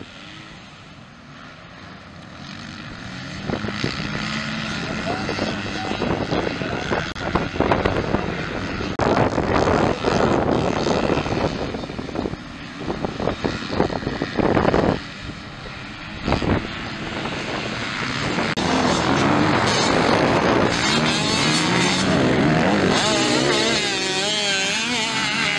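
A pack of motocross dirt bikes racing, their engines revving up and down through the gears as they pass, faint at first and much louder from about three seconds in, dipping briefly a couple of times and swelling again near the end.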